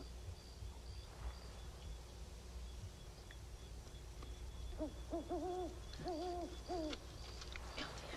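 An owl hooting: four hoots in quick succession, starting about five seconds in.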